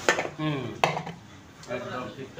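Steel dishes and cutlery clinking: two sharp clinks about a second apart, with voices in the background.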